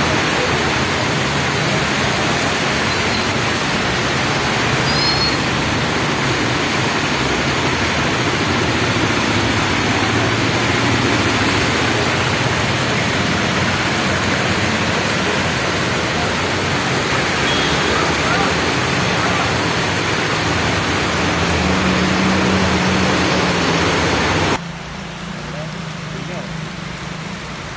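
Heavy rain falling, a loud, steady hiss, with low engine hum from vehicles driving through floodwater, one rising briefly near the end. Shortly before the end the hiss drops abruptly to a quieter level.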